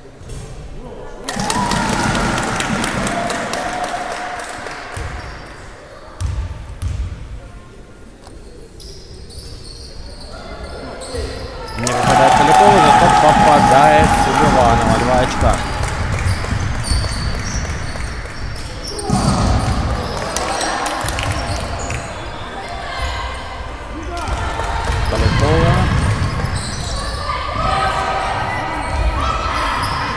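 A basketball being dribbled on an indoor court amid shouting voices, with loud surges of spectator cheering about a second in and again, loudest, around twelve seconds in.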